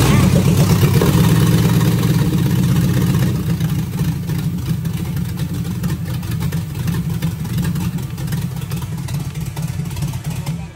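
A swapped-in 5.3 LS V8 running loud just after starting, on open shorty headers with no exhaust fitted yet. It is loudest in the first three seconds, then settles a little lower and steady.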